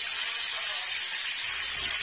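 Tap water running steadily, an even rush of water, with a low hum coming in about a second and a half in.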